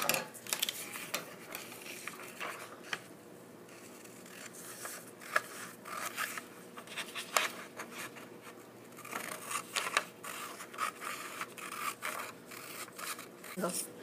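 Scissors snipping through a large sheet of paper, in runs of short sharp cuts with paper rustling and crackling as the sheet is turned and handled, and a short lull partway through.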